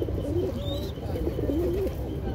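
Several racing pigeons cooing, their low wavering coos overlapping one another. A brief high chirp cuts in about two-thirds of a second in.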